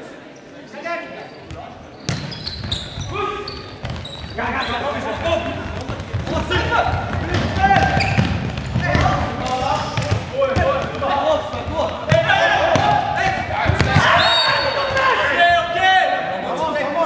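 Futsal match in a sports hall: players shouting to one another over the thud of the ball being kicked and bouncing on the wooden floor, with a short high referee's whistle near the end.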